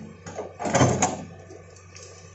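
Hitachi hydraulic excavator running steadily while its bucket works among felled trees, with a loud crash about half a second long a little under a second in.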